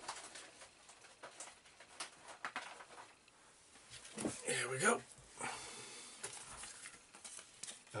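Faint, scattered clicks and rustles of craft supplies being rummaged through as foam pads are fetched, with a short spoken word a little over four seconds in.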